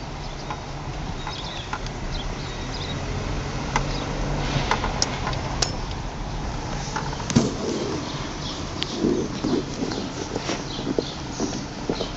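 Car interior noise from a car moving slowly: a low steady engine and road hum, with scattered light clicks and taps and some faint muffled sounds in the second half.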